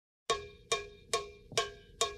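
A pitched percussion instrument struck four times at an even pace of a bit over two hits a second, each hit ringing briefly and dying away: the opening beats of the show's intro music.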